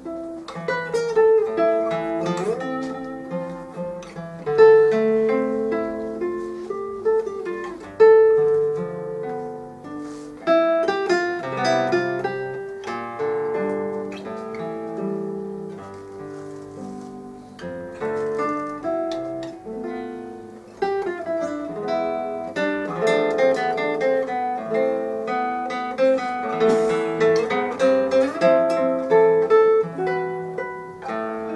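Classical guitar with nylon strings, a cedar double top and a sound port, played fingerstyle: a solo piece of plucked melody notes and chords, with a few louder accented chords along the way.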